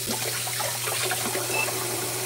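Kitchen tap running steadily into a stainless-steel sink, the water splashing in the basin.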